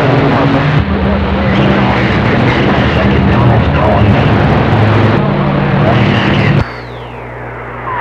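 CB radio speaker playing a strong, noisy long-distance skip signal: a dense rush of static with a steady buzzing hum and garbled voices buried in it. Near the end the signal drops away and a single whistle sweeps down in pitch.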